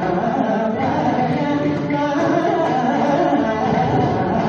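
Male Carnatic vocalist singing in raga Mohanam with violin accompaniment, while mridangam and ghatam keep up a continuous rhythm.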